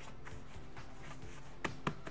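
Quiet background music with a steady pad, and two short taps near the end as a cornhole bag is handled on a cutting mat.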